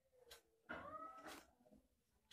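A faint animal cry: one pitched call that rises and falls, about a second long, starting just past a third of a second in, amid near silence.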